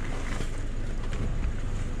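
Steady low rumble and hiss inside a stationary car with its engine running.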